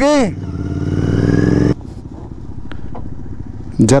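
Royal Enfield Continental GT 650's 648 cc parallel-twin engine pulling under throttle, rising in level for about a second and a half, then dropping suddenly to a lower, steady running sound.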